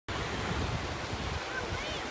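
Ocean surf breaking and washing up the beach, with wind buffeting the microphone into a steady low rumble.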